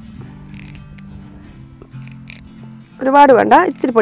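Soft background music with steady low notes, under two faint crisp rustles of curry leaves being stripped from their stem by hand. A woman starts speaking about three seconds in.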